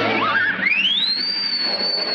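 Cartoon whistle sound effect: a pure tone slides steeply upward, then holds one high note, over an orchestral music underscore that fades under it.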